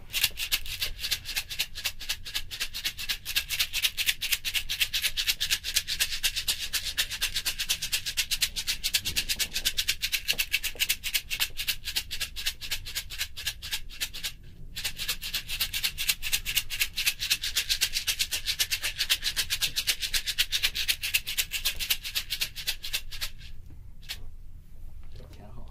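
A small red hand-held shaker shaken rapidly and steadily, carried around an i3DMic 3D recording microphone so that the sound moves front, back, left, right, up and down around the listening position. The shaking breaks off briefly a little past halfway and stops just before the end.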